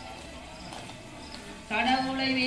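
A pause between sung lines of a kummi folk song, filled with rhythmic hand claps; the women's singing comes back in loudly near the end.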